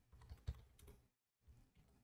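Faint typing on a Logitech MX wireless keyboard: a few soft, scattered key taps, the loudest about half a second in.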